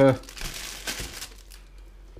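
Plastic freezer bag crinkling as it is handled and moved, for about a second, then quieter.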